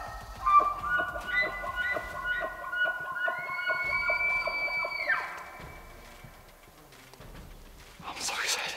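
Bull elk bugling, several high whistled calls overlapping. One call glides up into a long held high whistle about three seconds in and fades out about two seconds later.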